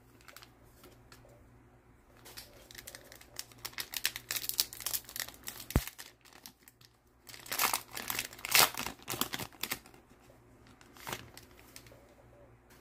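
Plastic cellophane wrapper of a baseball card cello pack being torn open and crinkled by hand. It crackles in irregular bursts from about two seconds in to about ten seconds, with one sharp click in the middle.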